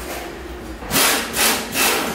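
A pneumatic tool on an air hose fired in three short bursts, about half a second apart, undoing the bolts of a motorcycle's steel shipping-crate frame.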